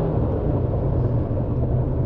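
2022 Subaru Forester Wilderness's 2.5-litre horizontally opposed four-cylinder boxer engine, driving through a CVT, droning steadily just after a full-throttle run to sixty.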